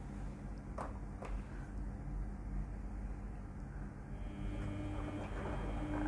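Samsung front-load washing machine starting its cycle after the start button is pressed: two soft clicks about a second in, then a steady hum with a low rush sets in about four seconds in.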